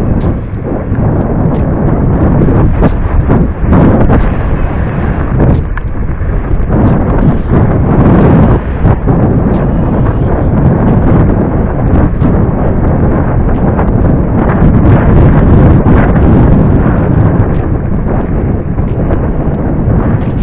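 Mountain bike riding over a rocky dirt trail: loud wind buffeting on the camera microphone, with the tyres crunching over gravel and frequent sharp clicks and rattles from the bike over rough ground.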